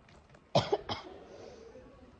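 A woman coughing twice in quick succession, with her hand to her mouth.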